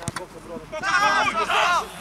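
A football struck with a short sharp thud at the start, then about a second in, loud shouting from several voices lasting about a second, in reaction to the shot at goal.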